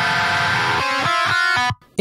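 Distorted metal rhythm guitar track played back with no low-pass filter, so its high-end sizzle is left in. It plays sustained chords with a few quick changes, then stops abruptly near the end.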